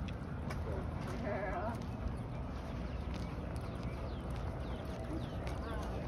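Outdoor street ambience: a steady low rumble of wind and passing traffic while walking, with a short wavering call about a second in and a fainter one near the end.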